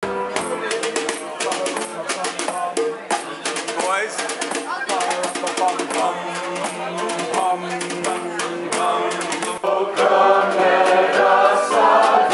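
Piano playing, with voices and rattling percussion clicks over it. About ten seconds in, a group of voices comes in singing together, louder.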